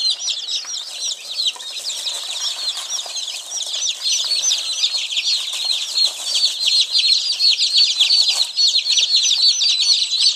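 A brooder of about eighty two-day-old chicks peeping without pause, many short high chirps overlapping into a dense chorus that gets a little louder about halfway through.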